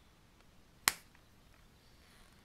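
A single sharp open-handed slap across the face: one crisp crack a little under a second in that dies away at once.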